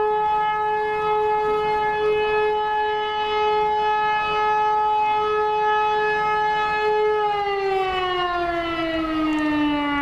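Fire siren sounding the fire-brigade alarm: one steady wail that, about seven seconds in, begins to fall slowly in pitch as the siren winds down.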